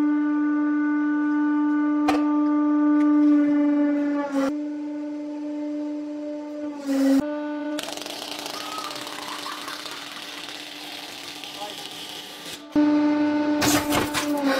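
Hydraulic press running with a steady, horn-like droning tone, which briefly breaks and dips in pitch twice. In the second half, a stack of paper being split by a blade ram makes a dry, noisy crunching for several seconds that covers the drone.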